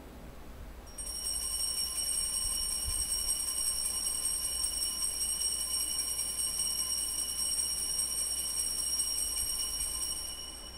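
Altar bells rung without a break during the elevation of the chalice, marking the consecration. The high, bright ringing starts about a second in and holds at a steady level until the end.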